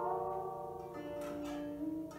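Guzheng played solo: the notes of a loud passage ring away, and a few soft plucked notes follow, one about a second in and another near the end.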